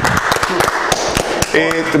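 A burst of cheering from a group of men, with rapid, irregular sharp claps and knocks, likely hands clapping and slapping the table, over a shout in the first second. Near the end a man's voice starts speaking.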